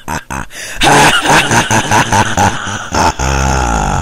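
A wordless voice at the close of a song recording, making drawn-out, wavering vocal sounds. It settles into a long low held tone near the end.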